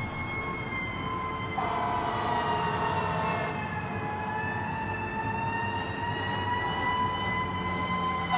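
Emergency siren wailing, its pitch sinking slowly and then rising again. A second, lower siren tone joins at about two seconds in and stops about a second and a half later, over a steady background rumble.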